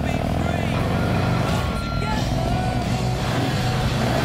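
Harley-Davidson Street motorcycle's V-twin engine running, a steady rumble, with music underneath.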